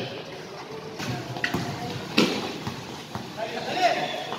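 Basketball play: scattered knocks of the ball bouncing and players' footfalls on the court, with a brief squeak about a second and a half in and the loudest thud just after two seconds.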